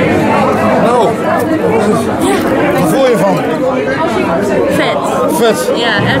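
Indistinct chatter: several people talking at once, their voices overlapping so that no single speaker stands out.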